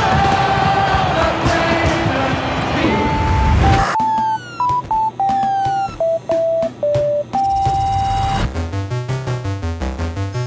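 Crowd cheering and fireworks booming, then a run of single electronic computer beeps at changing pitches with glitchy sweeps as retro on-screen text is typed out. Near the end, a pulsing synthesizer arpeggio begins.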